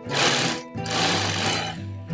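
Sunstar walking-foot industrial sewing machine running in two short bursts, stitching through thick plastic tarpaulin, over background guitar music.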